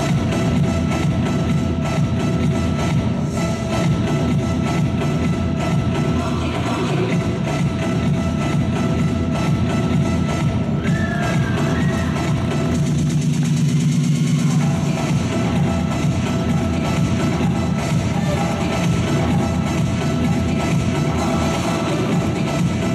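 Continuous music, as played for a gymnastics floor routine.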